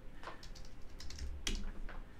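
A short run of computer keyboard keystrokes as a brief chat reply is typed and sent, with the sharpest click about one and a half seconds in.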